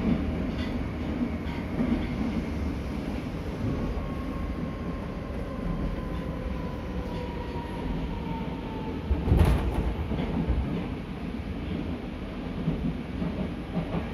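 Nagoya Municipal Subway Higashiyama Line 5050 series train running, heard from inside the car: a steady rumble, with a faint whine easing slowly down in pitch in the middle. A single sharp clunk, the loudest sound, comes about nine and a half seconds in.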